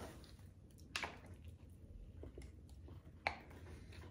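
Faint, soft sounds of people biting into and chewing burgers, with two short sharp mouth or food clicks, one about a second in and one near the end.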